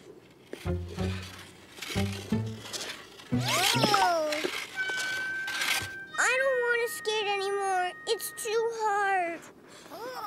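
Light cartoon background music with low bass notes, followed a little past the middle by a young child crying in three drawn-out, falling wails after a fall on the ice.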